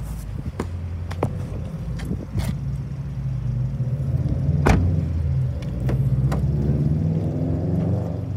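A low, steady vehicle rumble with faint drifting engine tones, broken by a few light clicks and one sharper knock a little past halfway as a car door is handled.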